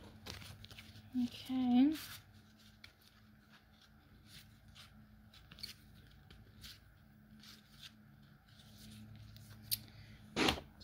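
A tarot deck being handled and shuffled, giving scattered soft card clicks and rustles over a steady low hum. A short hummed voice sound comes about a second and a half in.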